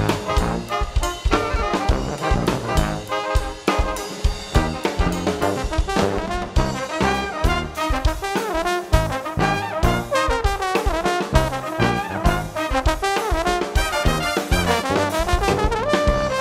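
Brass band playing an up-tempo tune: trumpets and trombones with saxophone over a steady drum beat and bass.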